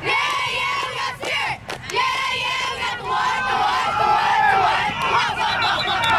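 A crowd of spectators shouting and cheering while a football play runs. Many high-pitched voices overlap, with a brief lull about one and a half seconds in.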